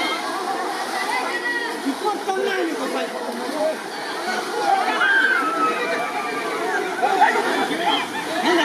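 A crowd of people talking over one another, with water sloshing as they wade.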